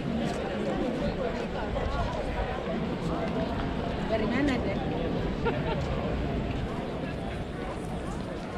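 Voices of passers-by talking in a busy pedestrian square, several people at once, with a few soft footsteps on the paving.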